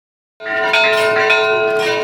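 A bell ringing, starting about half a second in, its several tones sustaining steadily, with a couple of further strikes joining in.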